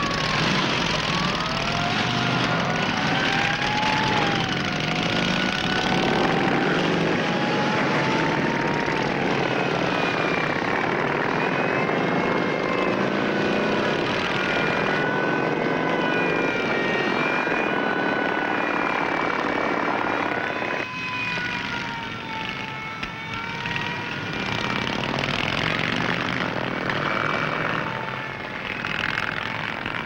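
A pack of chopper motorcycles and trikes running together, their engines rising and falling in pitch as they rev and pull away. The sound drops a little about two-thirds of the way through.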